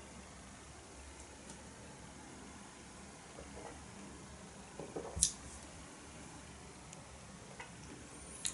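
Quiet room with faint mouth sounds as a strong dark stout is held and swallowed, and a single short click about five seconds in as the stemmed beer glass is set down on the table.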